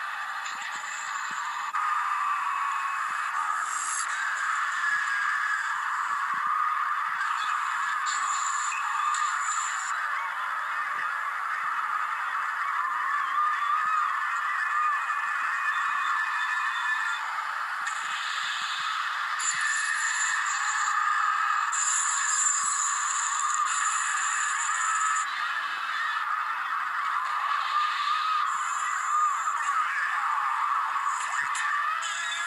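Cartoon soundtrack music played from a television and picked up off its speaker, thin and tinny with no bass.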